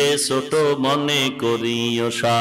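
A man's voice chanting a Bengali devotional verse in a melodic, drawn-out style over a microphone, with held, wavering notes in short phrases.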